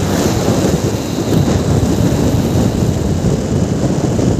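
Loud, steady wind buffeting on the camera microphone while travelling along a road on a moving vehicle.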